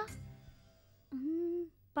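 Faint background score fading out, then a woman's single held hum, an 'mm' lasting about half a second, a little past the middle.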